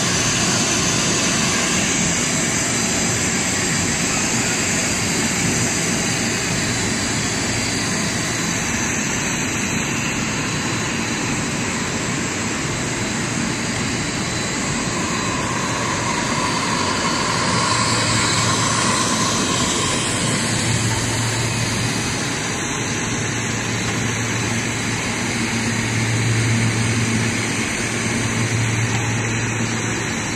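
Rubber hose production line machinery running: a loud, steady rushing noise, with a low hum that grows stronger in the second half.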